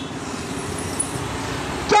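Steady road traffic noise, an even hum of passing vehicles with no clear individual event.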